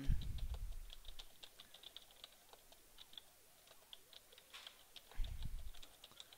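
Computer keyboard typing: a quick, uneven run of faint key clicks as a line of text is entered. A brief low rumble comes near the end.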